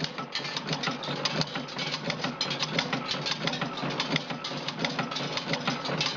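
Motorcycle wheel spoke tapering and shrinking machine running: a steady low hum under a rapid, even clatter of metal strikes, several a second, while wire spokes are being processed.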